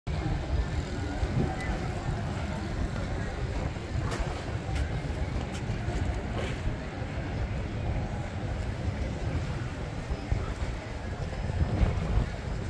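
Outdoor city ambience: wind rumbling on the phone's microphone, with the voices of people nearby and a few light clicks about four to six seconds in.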